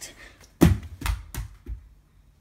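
Objects hitting a carpeted floor: one heavy thump about half a second in, then three lighter knocks as things bounce and settle.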